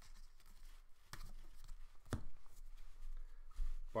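Trading cards being flipped through in the hands: soft cardstock sliding and rubbing, with two light taps about one and two seconds in.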